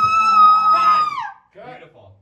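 A woman's acted scream, a long high-pitched cry held on one pitch that drops away just over a second in. A short burst of voice follows near the end.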